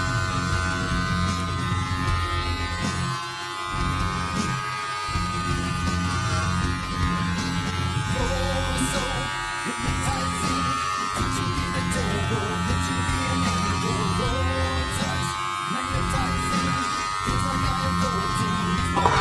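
Corded electric hair clippers buzzing steadily as they cut through hair, with a music track with singing playing loudly over them.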